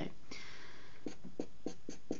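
Felt-tip marker scratching on paper. A longer drawn stroke comes first, then a run of short quick strokes, several a second, as hair lines are sketched.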